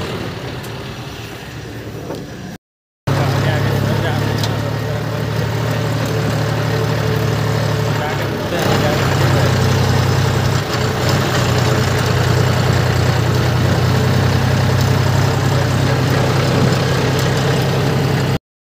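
A John Deere tractor's diesel engine running steadily while it drives along a road, heard from the driver's seat as a loud, even drone. Its sound drops out briefly about three seconds in.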